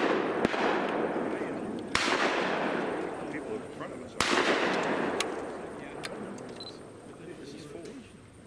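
Shotgun shots from elsewhere on a clay-shooting course. There is a sharp crack about half a second in, then two louder reports about two seconds apart, each trailing off in a long rolling echo.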